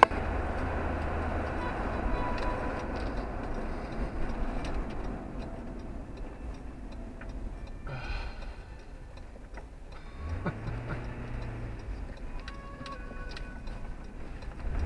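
Road and engine noise inside a car's cabin as it drives, with a turn-signal indicator ticking.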